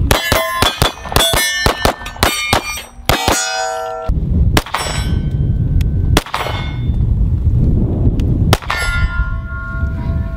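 A pistol fired in a rapid string, about a dozen shots in three seconds, each hit ringing off steel targets with a metallic clang. After that come a few slower, spaced shots over a low rumble, the last one near the end leaving a steel target ringing.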